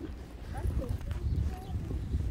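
A camel walking on a dirt track, its soft, irregular footfalls heard under a steady low rumble.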